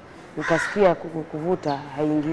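A woman speaking, her words not transcribed, with a harsh, raspy stretch about half a second in.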